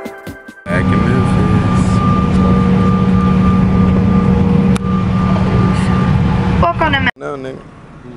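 Jet airliner engines running, heard from inside the passenger cabin near the wing: a loud, steady drone with a thin steady whine over it. It cuts in abruptly just under a second in and cuts off about seven seconds in.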